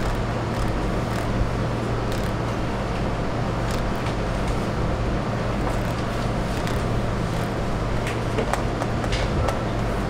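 Steady room background noise: a constant low hum with a broad rush over it, and a few faint clicks scattered through.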